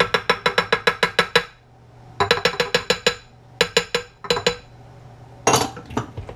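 Several runs of quick, ringing taps, about eight a second, as a small bowl is knocked against the stand mixer's glass bowl to empty cocoa powder into the dough. A brief scrape near the end.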